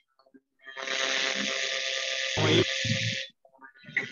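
A steady machine-like whirring noise, heard through a video-call participant's open microphone. It starts about a second in and cuts off suddenly after about two and a half seconds, with a brief low voice sound near the end.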